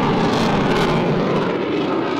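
Eurofighter Typhoon's twin EJ200 turbofan engines in afterburner as the jet climbs steeply after take-off: a loud, steady jet noise, its highest hiss thinning near the end as the aircraft pulls away.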